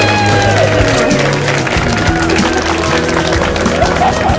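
Background music with wedding guests applauding and cheering.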